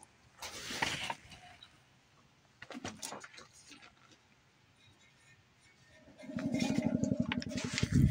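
Handling rustles, then about six seconds in a low, rough growl starts, rapidly pulsing, with a steady hum above it.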